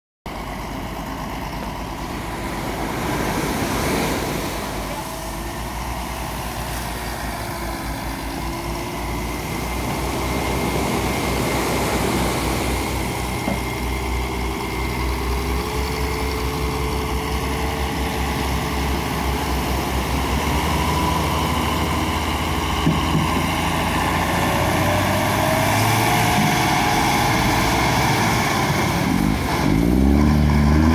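Tractor's diesel engine working hard as it pushes a beached fishing boat into the surf, its pitch rising and falling with the throttle and growing louder toward the end. Waves wash underneath.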